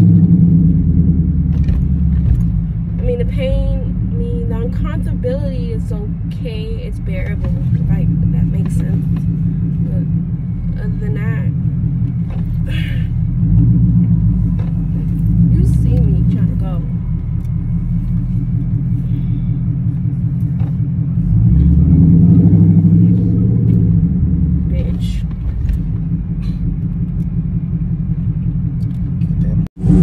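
Steady low rumble of road and engine noise inside a moving car's cabin. It breaks off abruptly just before the end.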